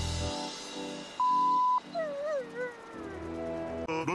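Background music with a half-second censor bleep, a flat pure tone, about a second in. After the bleep comes a dog whining, its pitch wavering and falling.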